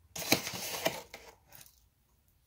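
Brief kitchen handling noise lasting about a second: a rustling, granular scrape with two sharp clicks, as when ingredients are scooped or poured with a spoon.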